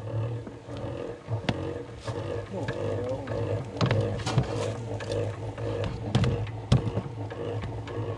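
Kitchen knife scraping and clicking against honeycomb and its wooden frame as wax cappings are cut off, in short scrapes and taps throughout. Under it runs a steady hum with wavering pitch, typical of honeybees buzzing around the opened comb.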